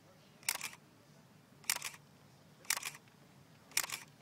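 Camera shutter firing four times, about once a second, each release a quick double click.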